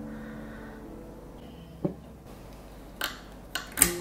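Soft plucked background music fading away, then a few sharp clicks and knocks of tableware being handled on a wooden table, clustered near the end with the loudest just before it.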